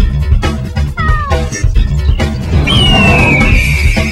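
Music with a steady beat, over which a cat meows twice with falling cries: a short wavering one about a second in and a longer one near the end.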